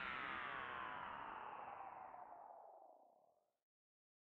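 Electronic outro sound effect: a synthesized chord of many tones sliding slowly downward in pitch while fading out, dying away about three and a half seconds in.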